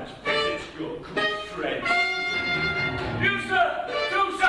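A man singing a dramatic musical-theatre song over a small band with violin and other strings, holding one long note near the middle.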